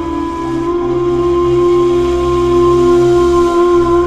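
Music: a breathy ney (Sufi end-blown reed flute) holding one long steady note over a low sustained drone.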